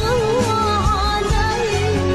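A sholawat, an Islamic devotional song: a solo voice sings a wavering, ornamented melody over bass and drums.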